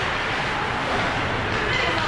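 Ice rink during play: a steady scraping hiss of skate blades on the ice over a low rumble, with a slightly sharper scrape near the end.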